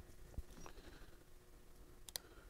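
Near silence: room tone, with a faint click about half a second in.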